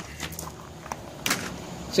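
Light handling noise, a few short knocks and rustles as a magnetic tool strip is picked up, over a low steady hum.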